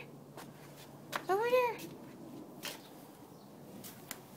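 Mostly speech: a woman's sing-song voice calling "over", its pitch rising then falling, with a few faint clicks and otherwise quiet room tone.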